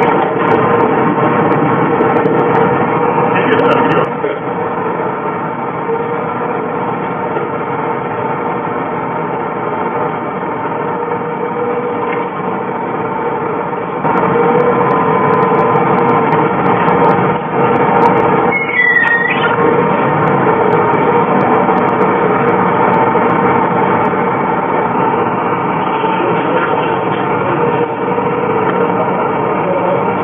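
Excavator's diesel engine and hydraulics running steadily under load as its hydraulic splitting attachment works a quarried granite block, with a brief high squeal a little past halfway.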